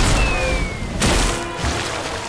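Cartoon explosion sound effect of a giant volcano cake erupting: a sudden loud boom with deep rumble, a falling whistle, and a second blast about a second in that trails into a sustained rushing noise, with music underneath.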